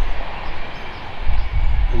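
Wind buffeting the microphone: an irregular, gusting low rumble over a steady rushing hiss.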